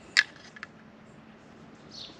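A single sharp click just after the start, then a fainter tick, as a dial caliper is set against a water pump's shaft to measure it.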